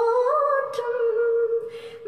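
A woman humming one long, unaccompanied note of a Tamil film melody. The pitch steps up slightly about half a second in, and the note fades out near the end.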